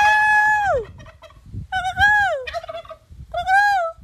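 Domestic turkey tom gobbling: three loud calls, each held and then falling off in pitch, about a second and a half apart.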